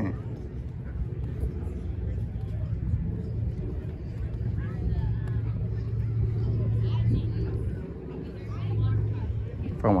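A steady low engine hum with a faint murmur of voices in the background.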